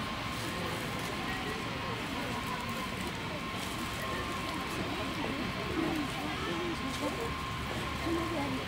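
Crowd ambience: many people talking indistinctly at a distance over steady city background noise.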